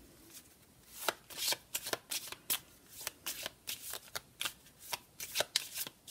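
A deck of Sibilla fortune-telling cards being shuffled by hand, a quick run of short papery strokes at about three a second that begins about a second in.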